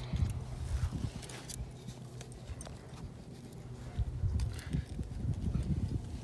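Scuffs and a few light knocks as a metal spade anchor is handled and set down into a sand trench, over a low wind rumble on the microphone.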